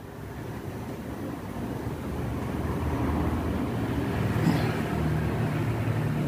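Low, steady motor rumble that grows louder throughout.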